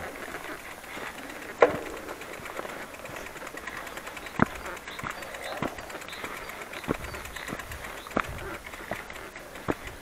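Bicycle riding over a rough dirt path: steady tyre and wind noise broken by sharp knocks and rattles from bumps, the loudest about one and a half seconds in, then several more spaced a second or so apart.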